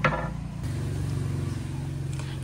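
A motor engine running steadily with a low hum.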